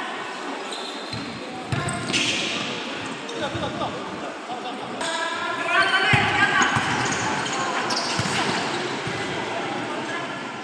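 Futsal ball being kicked and thudding on the hard indoor court, a few sharp knocks, with players shouting over it in a large sports hall.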